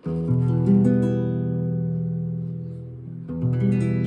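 E minor open chord (022000) strummed on an acoustic guitar, the strings ringing out and slowly fading, then strummed again a little past three seconds in.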